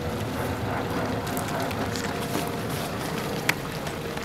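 Steady background rumble and hiss of outdoor location sound, with a faint steady hum and a single sharp click about three and a half seconds in.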